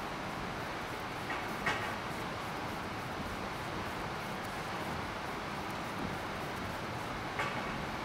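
Vacuum cleaner motor running with a steady whirring hiss, with a few short clicks and knocks, two close together about one and a half seconds in and one near the end.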